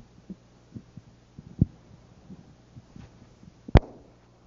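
Steady low hum with irregular soft thumps and knocks as the lecturer moves about with a long pointer: a sharper knock about a second and a half in, and the loudest one near the end as he walks off towards the board.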